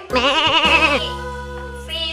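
A sheep-like bleat lasting about the first second, its pitch wobbling rapidly, over background music that then holds steady chords.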